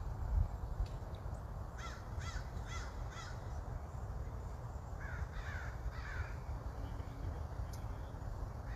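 A crow cawing: two runs of three short calls a few seconds apart, over a steady low rumble.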